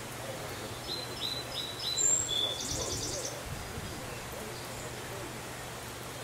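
Small birds calling: a run of four short, quick falling chirps about a second in, then a sharper high chirp and a fast rattling trill around the middle.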